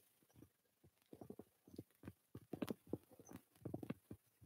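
Faint, irregular soft taps and knocks from a body rocking and kicking on a floor mat during weighted hollow rocks with flutter kicks, starting about a second in.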